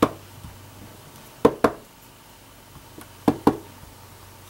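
A wooden-mounted rubber stamp knocking as it is tapped on an ink pad and pressed onto paper on a table: a knock at the start, then a quick pair of knocks about a second and a half in and another pair a little past three seconds.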